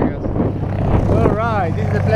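A steady low engine drone, with a short voiced exclamation whose pitch rises and falls about a second and a half in.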